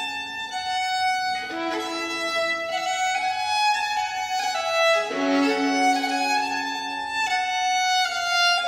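A baroque violin and a mother-and-child double virginal playing an early 17th-century dance together. The violin holds long notes over the plucked keyboard, with fresh keyboard chords struck about a second and a half and five seconds in.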